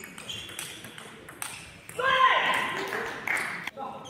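A table tennis ball clicking sharply on bats and table about twice a second in a rally. About halfway through, a loud voice, a player's shout, rises over it for a second or so.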